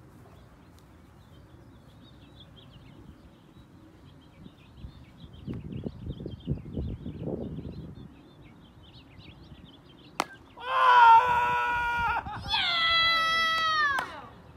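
A plastic wiffle ball bat cracks against the ball about ten seconds in. Right after it come two long, high-pitched screams of excitement from a child, the second falling in pitch at its end, over faint birdsong.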